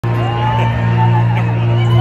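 A sustained low tone from a concert PA system, held steady, with crowd whoops and shouts rising over it.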